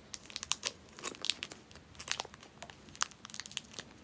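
A candy wrapper crinkling as fingers handle and unwrap it: a quiet, irregular run of sharp crackles.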